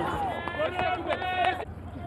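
Footballers shouting and calling out to each other on the pitch, with a couple of long held shouts in the middle.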